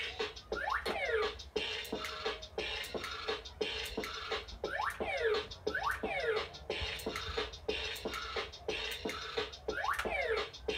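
Bop It Refresh handheld electronic game playing its fast electronic beat during a round. A quick run of sharp clicks is overlaid every second or few by sound effects that sweep down in pitch.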